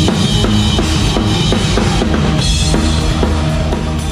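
Heavy metal drum kit played live at a fast, steady beat: bass drum and snare strokes under a constant wash of cymbals, with the band's low end underneath.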